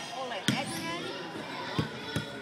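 Basketball bouncing on a hardwood gym floor: two sharp bounces, the first about half a second in and louder, the second near the end.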